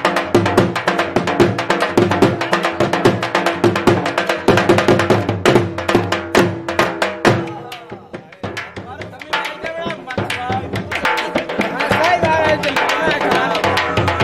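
Dhol drums played in a fast, dense beat that breaks off a little past halfway; in the lull voices are heard, and the drumming picks up again near the end.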